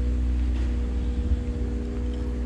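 Steady low rumble of a running engine, with a constant hum of a few steady tones over it and no change in speed.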